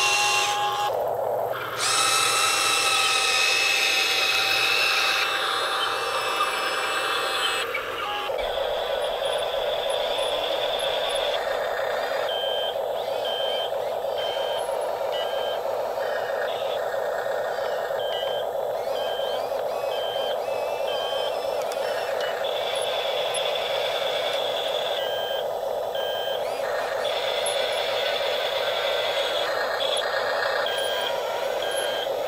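Electric drive motors and gearboxes of a radio-controlled tracked bulldozer whining steadily as it pushes soil, with two runs of evenly paced electronic beeping like a reversing alarm. During the first several seconds there is a busier mechanical whir with steady tones from the RC excavator working.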